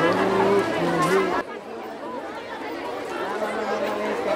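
Several people talking at once, a crowd's chatter. The level drops suddenly about a second and a half in, then slowly builds again.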